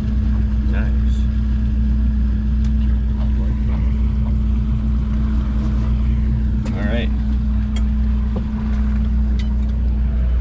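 Fishing boat's engine running steadily at low speed, a continuous low drone with a steady hum.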